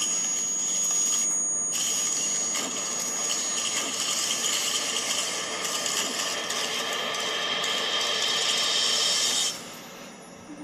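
Steady hissing noise with a thin, high whistle over it for the first few seconds, briefly dipping about a second and a half in and cutting off abruptly just before the end: a sound effect in a music video's intro.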